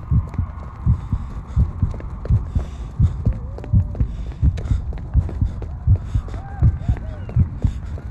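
Sound-design heartbeat: steady, even low thumps, about two to three a second, with faint voices and whistle-like glides underneath.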